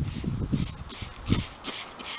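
Plastic trigger spray bottle squirting coloured water in a quick series of short hissing sprays, a few each second.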